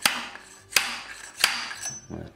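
Bicycle headset cup removal tool being driven with three sharp metal-on-metal whacks a little under a second apart, each ringing briefly.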